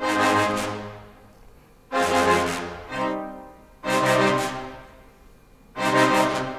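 Sampled orchestral low brass (CineBrass Monster Low Brass) playing short, accented stabs, heard on their own. Four main stabs about two seconds apart, with a lighter one between the second and third, each ringing out into reverb.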